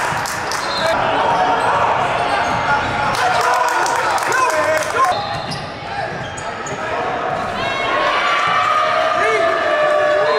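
Live basketball game sound on a hardwood gym floor: a ball bouncing, short sneaker squeaks and indistinct players' voices, echoing in a large hall.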